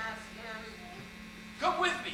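Steady electrical mains hum on the recording, with faint voices at the start and a short, loud voice near the end.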